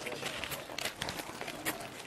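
Shoes shuffling and scuffing on paving stones as a crowd of men files past shaking hands, with irregular short scrapes and taps several times a second over a low murmur of voices.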